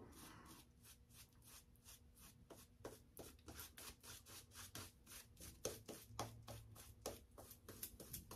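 Faint, quick swishing strokes of a synthetic shaving brush working lather over a stubbled face, several strokes a second.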